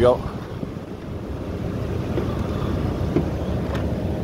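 2005 Dodge Dakota's 4.7-litre Magnum V8 idling steadily, purring, with a couple of faint clicks in the second half as the hood is opened.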